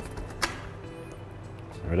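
Race Face Cinch 30 mm crank spindle being rocked side to side and drawn out of the bicycle's bottom bracket bearings, with one sharp click about half a second in. Faint background music underneath.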